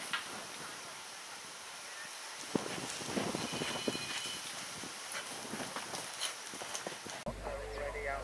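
A galloping horse on turf: irregular hoof thuds from about two and a half seconds in. Near the end the sound changes abruptly to a steady low hum.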